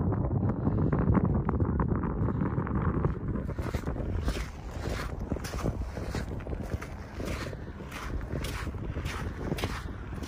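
Wind buffeting the microphone, heaviest in the first three seconds, then walking footsteps on the sandy lakeshore at about two steps a second over the continuing wind.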